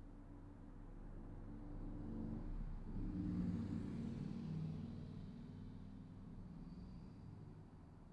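A passing vehicle: a rush that swells, peaks about three and a half seconds in and fades away, over a low steady hum.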